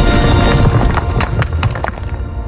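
Film sound effect of a teleport: a loud low rumble and rushing noise layered with music. In the second half comes a quick run of sharp clicks and knocks, and the effect dies down near the end.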